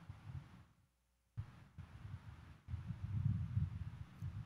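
Low, muffled rumbling and knocking in three bursts: one at the start, one about one and a half seconds in, and the loudest from about two and a half seconds on. Each begins suddenly, with dead silence between them.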